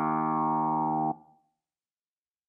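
A Nord Stage 4 stage keyboard holding one sustained chord on a preset patch, steady in level. It cuts off abruptly just over a second in.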